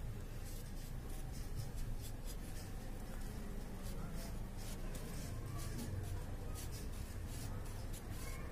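Steel spoon scraping a Vim dishwash bar, a run of short scratchy strokes, several a second, as soap is shaved off into a cup.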